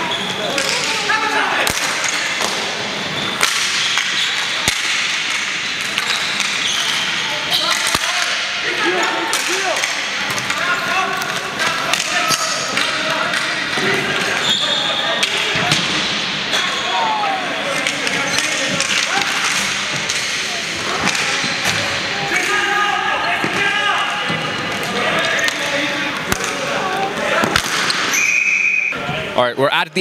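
Live ball hockey play in an arena: sticks clacking against the plastic ball and each other, the ball smacking the boards, and players shouting to one another. A short high tone sounds near the end.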